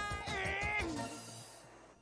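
A drawn-out, high-pitched cat-like "meow" voice call in the first second, wavering and rising near its end, then fading away over soft background music.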